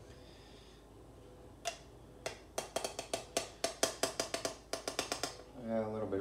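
Metal spoon clinking rapidly against a tin can of pumpkin, about six ringing clicks a second for some three seconds, while pumpkin is scooped out. A single click comes first.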